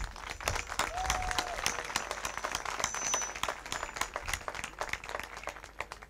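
Large audience applauding: many hands clapping in a dense, steady patter.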